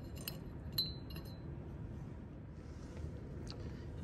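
Spatula clinking lightly against a glass graduated cylinder as magnesium powder is tipped in: a few light clinks in the first second and a half, and one more near the end.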